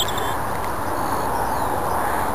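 Steady outdoor background noise, an even hiss and rumble, with faint high bird chirps at the start and again about a second in.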